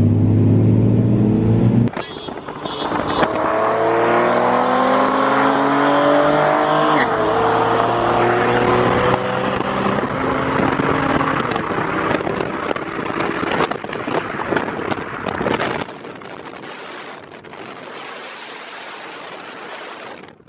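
Car engines under hard acceleration in a roll race between a 2019 Honda Civic Si and a V6 Mustang. After a steady cruising drone, the engine pitch climbs, drops at an upshift about seven seconds in and climbs again, then fades into wind noise for the last few seconds.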